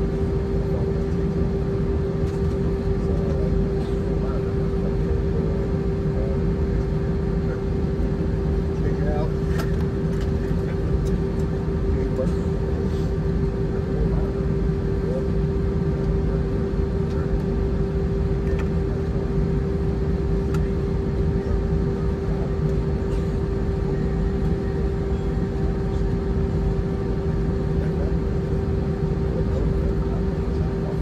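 Cabin noise of an Airbus A319-132 taxiing, heard inside the cabin over the wing: its IAE V2500 engines idling as a steady low rumble with a constant hum-like tone on top.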